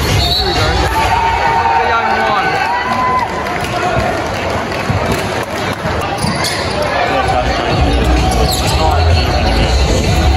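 A basketball being dribbled on an indoor court during live play, with players' and spectators' voices echoing in a large hall. Arena music with a bass beat comes back in about seven seconds in.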